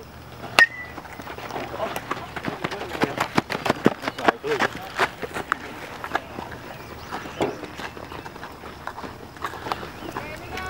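A metal baseball bat hits a pitched ball about half a second in: one sharp crack with a brief ringing ping. Voices shouting follow for several seconds.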